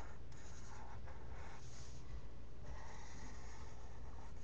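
Marker tip drawing on paper: several scratchy strokes of different lengths as the outline is drawn, the longest lasting about a second.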